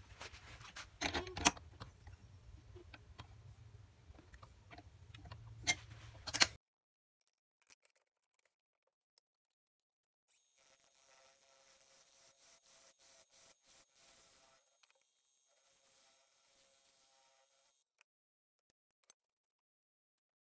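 Scattered clicks and knocks of handling at a wood lathe over a low hum, cutting off suddenly about six and a half seconds in. After that there is only faint sound.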